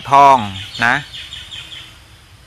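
A man's voice drawing out two syllables, the first falling in pitch and the second rising, then trailing off into a short pause.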